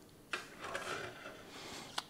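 Soft handling noise of sheet-metal mixer chassis parts being shifted into line on a tabletop: a light scrape about a third of a second in, faint rubbing, and a small click near the end.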